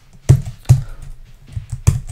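Computer keyboard keystrokes: a handful of sharp key clicks, three of them louder than the rest, spread over two seconds.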